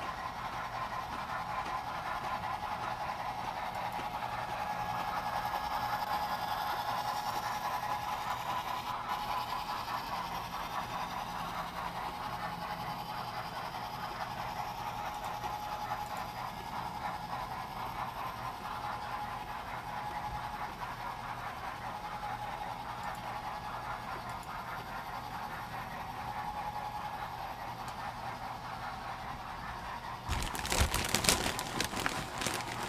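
Model trains running on a layout: a steady rumble and hum of wheels on rail and motors, swelling louder for a few seconds about six to nine seconds in.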